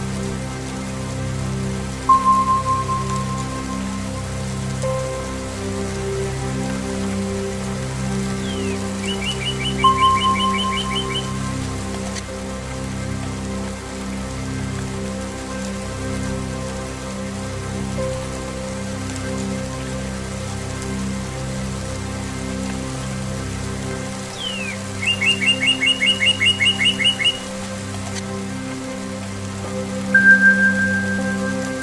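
Ambient relaxation music of sustained low strings over steady rain. A bell-like tone is struck about two seconds in and again about ten seconds in. A songbird sings a rapid trill of repeated notes twice, about ten seconds in and again near the end.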